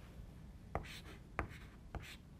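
Chalk writing on a blackboard: faint scratching with three sharp taps of the chalk, spaced about two thirds of a second apart.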